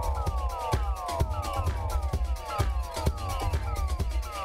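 Electronic dance music mixed live from DJ decks: a heavy bass line and steady beat under a repeating figure of siren-like tones that each glide downward, one after another.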